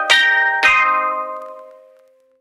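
Sampled steel drum (Roland SC-55 steelpan samples in an Ableton Sampler rack) plays two notes, the second about half a second after the first. Both ring out and fade away, heard through the rack's Retro Ragga saturation and compression macro turned up.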